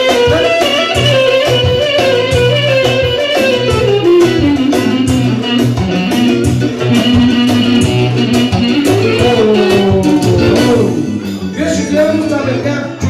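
Live band dance music: a steady drum beat under a melody line on plucked and electric instruments that slides up and down, dropping away near the end.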